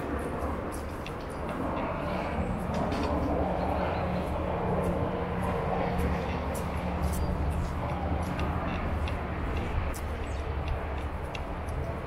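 Low, steady rumble of distant traffic that swells for several seconds and eases off near the end, with footsteps on an asphalt path clicking about twice a second.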